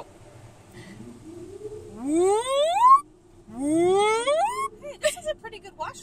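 A woman's voice giving two rising 'whooo' sounds, each about a second long and sweeping up in pitch, over a steady hum from the car wash's drying blowers. Short bits of talk come near the end.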